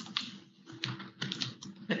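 Computer keyboard typing: a run of irregular key clicks, several a second, over a faint steady hum.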